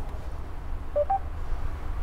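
Two short electronic beeps about a second in, the second higher than the first, from the Mercedes MBUX voice assistant as it takes a spoken question before answering. A steady low hum runs underneath.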